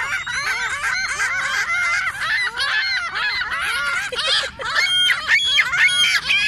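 A flock of ring-billed gulls calling all at once: many short cries rising and falling in pitch, overlapping without a break, from a hungry flock waiting to be fed. One louder, longer call comes about five seconds in.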